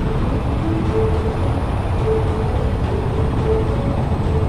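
Light helicopter in flight, its rotor and engine running steadily, heard from outside the cabin, with a faint steady high whine above the low rumble.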